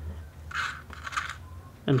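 Faint handling noise: two soft rustles about half a second apart as a small flight-controller circuit board and its USB cable are moved about in the hands.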